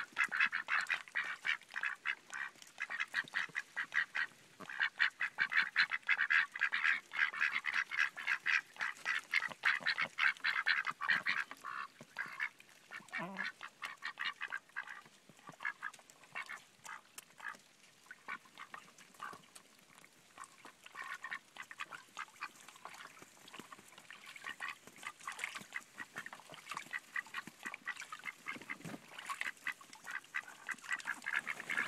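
A small flock of pet ducks (Pekins, Cayugas and Welsh Harlequins) quacking in rapid, overlapping chatter: loud and continuous for the first dozen seconds, thinning to scattered quieter calls in the middle, then picking up again near the end.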